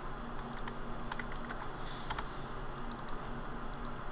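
Light, irregular taps of computer keys, a few a second, over a faint steady low hum.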